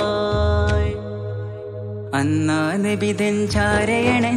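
Malayalam Mappila song music (a Nabidina song) with held melody notes. It dips quieter about a second in and comes back fuller, with a new melody line, at about two seconds.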